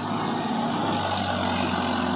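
Farmtrac 45 Supermaxx tractor's diesel engine running at a steady, even speed.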